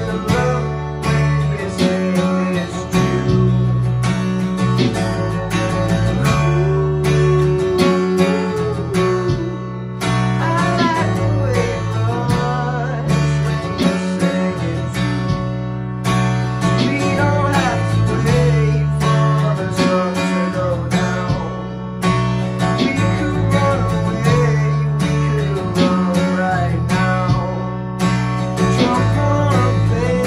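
Steel-string acoustic guitar strummed in a steady rhythm, moving through repeating chord changes every couple of seconds as song accompaniment.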